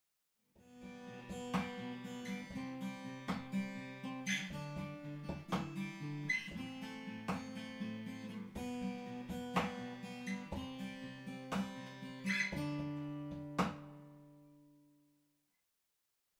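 A Taylor and a Faith steel-string acoustic guitar played together, strumming chords with sharp percussive strokes about once a second. Near the end a last chord rings out and fades away.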